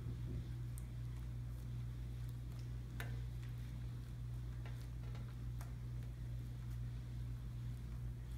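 Homemade glue slime being kneaded and stretched by hand, giving off scattered small, irregular clicks and pops, over a steady low hum.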